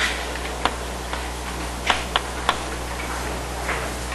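Chalk writing on a blackboard: about six short, sharp clicks of the chalk striking the board at uneven intervals.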